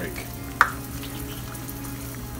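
Egg frying in oil in a Starfrit The Rock non-stick aluminum frying pan: a steady, soft sizzle. A single sharp tap comes about half a second in.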